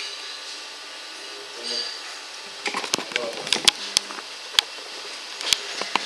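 Metal tools being handled at a metal lathe: a string of sharp metallic clicks and clinks over about three seconds in the second half, over a faint steady workshop hum.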